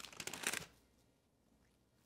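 Parchment paper rustling and crinkling as a parchment-lined baking tray is picked up and handled, for about half a second, then near silence.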